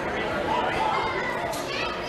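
Children playing and calling out: a hubbub of overlapping young voices.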